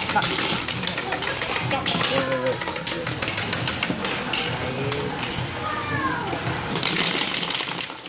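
B-Daman toy marble shooters being fired in rapid succession, a dense, irregular run of plastic clicks and clattering marbles striking the plastic field and targets. Voices can be heard underneath.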